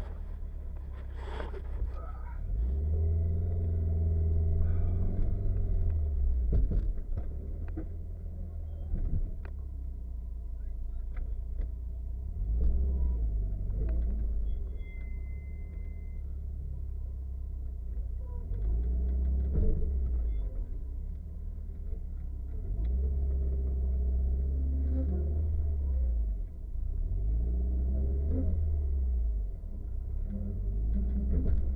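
Subaru Impreza WRX STI's turbocharged flat-four engine heard from inside the cabin. It swells and eases several times as the car is driven and slowed on a cone course, with a deep rumble throughout.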